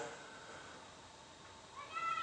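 Quiet room tone, then near the end a brief high-pitched call that rises in pitch.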